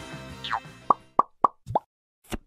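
Cartoon pop sound effects: a quick falling whistle, then four short rising 'bloop' pops about a quarter to a third of a second apart, as background music fades out.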